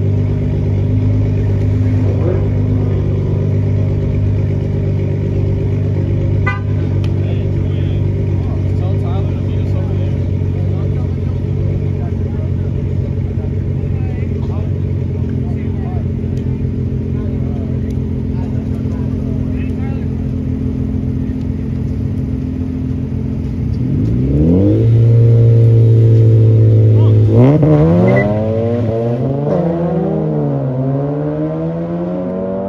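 Two cars idling at a drag-race start line, their engines running steadily for most of the time. Near the end one engine revs up and holds high, then the cars launch and accelerate away, engine pitch climbing and dropping through gear shifts.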